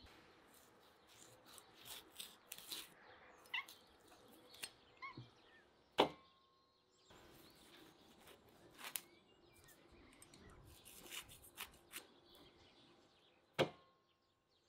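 A knife cutting into air-dried meat makes a run of short scraping, clicking cuts, with a sharp knock about six seconds in and another near the end. A bird chirps faintly a few times in the background.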